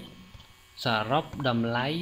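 A man's voice speaking, starting about a second in after a short pause, over a faint steady electrical hum.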